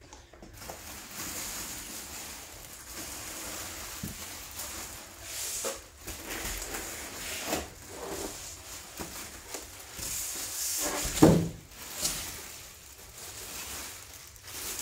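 Off-camera handling noises: steady rustling with several knocks, the loudest about eleven seconds in.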